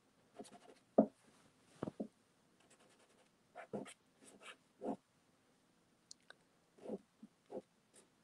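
Soft pastel stick scratching over a sanded pastel board in short, irregular strokes, with fingers rubbing the pastel in between.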